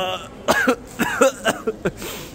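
A man coughing in a quick run of short coughs, set off by a strong smell he has just sniffed.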